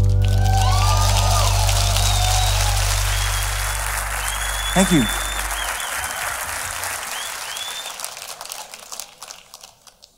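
Audience applauding and cheering, with whistles and a falling shout about halfway through. Under it the band's last sustained chord rings out and dies away about six seconds in. The applause then fades out toward the end.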